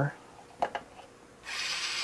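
A few faint clicks as a jumper wire is pushed into a breadboard, then about one and a half seconds in a small DC motor starts up and runs with a steady whirr, switched on through an MX1508 H-bridge driver.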